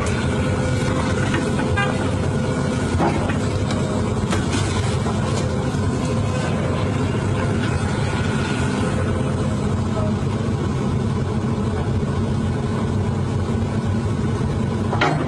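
Excavator's diesel engine idling steadily, with a few scattered knocks and clatter from the demolition site.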